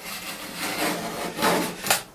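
A hand scraping tool raking old sealant out of a tiled corner joint, in several scraping strokes that grow louder, the loudest near the end. The sealant being removed has failed and let water in behind the tiles.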